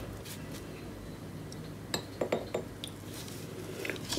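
Light glass clinks of a bottle against a small glass jar as liquid is dribbled in: a short cluster about two seconds in and one more near the end.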